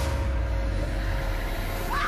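Heavy, steady low rumble of a motorboat engine at speed, starting abruptly with a hit. A woman begins screaming near the end.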